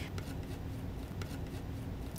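Metal palette knife spreading and mixing fiber paste with acrylic paint on paper: a faint scraping rub with a couple of light ticks.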